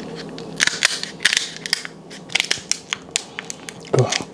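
Cooked crab shell cracking and crunching as seafood scissors cut into it: a quick run of sharp cracks in clusters, starting about half a second in and lasting about three seconds.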